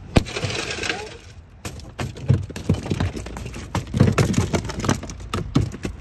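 A car's tempered-glass side window shattering under one strike from a carbide-tipped safety hammer: a sharp crack, then about a second of crackling as the pane breaks up. After that come several seconds of scattered clicks and tinkles of glass fragments.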